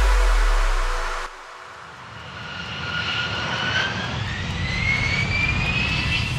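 Electronic background music cuts off about a second in. Then jet aircraft engine noise swells in: a low rumble with a whine that rises steadily in pitch.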